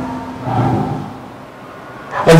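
A pause in a man's speech: a brief, faint low vocal sound about half a second in, then quiet room tone.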